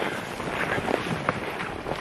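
Wind buffeting the microphone, with scuffing steps on snow as a walker slips on the downhill path.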